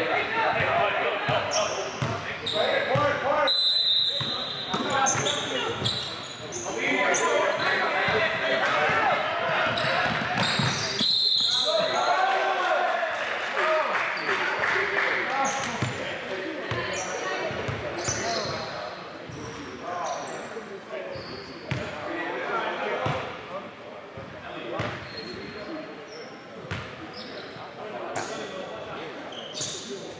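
Basketball bouncing on a hardwood gym floor amid players' shouts and chatter echoing around a large gym. Two short high-pitched tones come in the first half.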